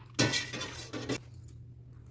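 A stirring utensil clinking against the side of a stainless steel stockpot while stirring a dye bath: one sharp ringing clink about a fifth of a second in, a softer one about a second in.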